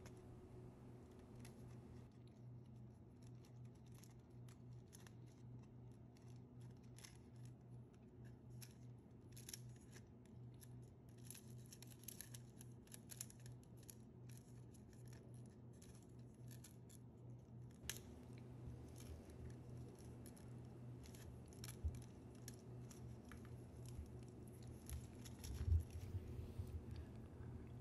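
Faint rustling and small irregular clicks of thin insulated wires being unwound and pulled free from the plastic underside of a model railway track switch, over a low steady hum.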